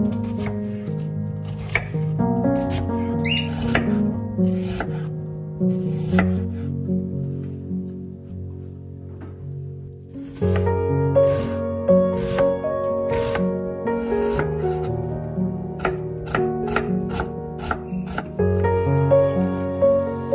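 A chef's knife chopping a raw onion on a wooden cutting board: a run of quick, uneven cutting strikes, thickest in the second half, over background music.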